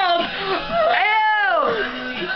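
A girl's voice making a drawn-out, high-pitched squeal that rises and then falls in pitch, about a second in.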